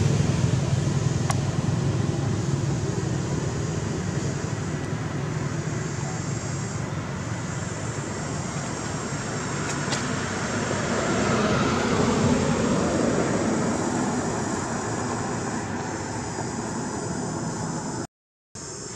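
Road traffic: a vehicle's rumble fading away at the start, then another vehicle passing about two-thirds of the way in, its sound swelling and dropping in pitch as it goes by.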